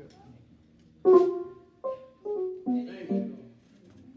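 Church keyboard playing a short phrase of five notes or chords, starting about a second in. The first is the loudest, and the line falls in pitch overall.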